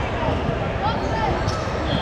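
Voices in a gym, with a volleyball bouncing and thudding on the court floor.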